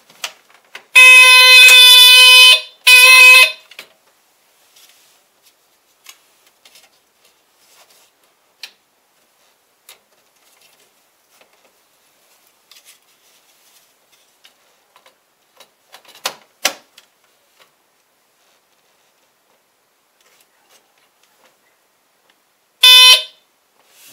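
Smoke detector's alarm sounding as it is tested: a long, very loud blast about a second in and a shorter one right after, then a brief blast near the end. In between there are only faint handling clicks and a knock.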